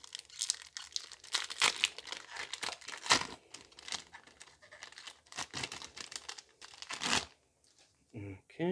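A Pokémon booster pack's foil wrapper being torn open and crinkled in the hands: a run of irregular crackles and rips, loudest about three seconds in and again near the end, where it stops.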